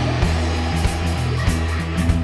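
Rock band playing: a strummed electric guitar over bass guitar and a steady drum beat.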